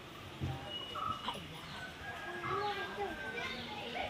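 Voices of people talking and calling in the background, a child's among them, with a few short high chirps.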